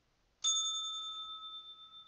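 A bell struck once, about half a second in, ringing with a clear high tone that slowly fades.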